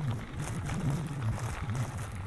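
Bicycle tyres rolling steadily over a loose gravel road, with wind rumbling on the phone's microphone.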